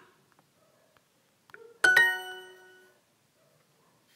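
Duolingo app's correct-answer chime: two quick rising notes that ring out and fade within about a second, with a faint tap just before.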